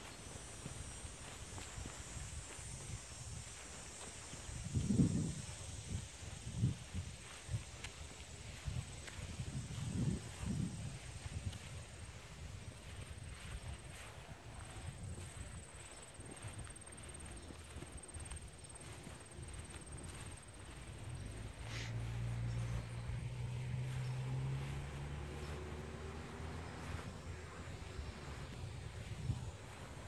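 Footsteps on grass and handling noise from a hand-held phone being carried, with a few louder low thumps about five and ten seconds in, over faint outdoor ambience. A thin steady high tone runs through the first half, and a low hum comes in for a few seconds near the end.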